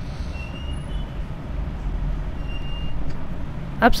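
Steady low background rumble, with two faint, brief high whistling tones about half a second and two and a half seconds in.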